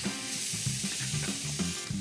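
Ground-beef burger patties sizzling in a hot cast iron pan just after being flipped, a steady hiss, with background music carrying a low bass line underneath.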